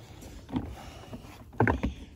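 Plastic wet/dry shop vac being grabbed by its carry handle and shifted, with light clicks and a louder clunk about one and a half seconds in, over low wind rumble on the microphone.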